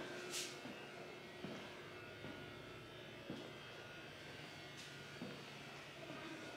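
Faint room tone with a steady low electrical hum, broken by a few soft clicks and a short hiss about half a second in.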